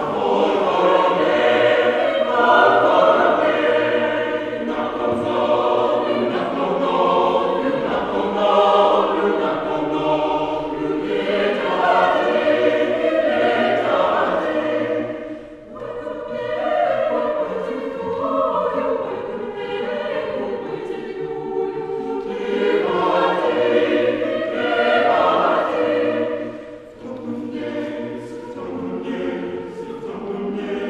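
Mixed choir of men and women singing unaccompanied, in sustained phrases, with short breaths between phrases about halfway through and again near the end.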